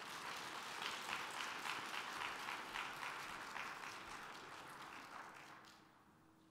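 Audience applauding, a dense patter of many hands clapping that tapers off and stops near the end.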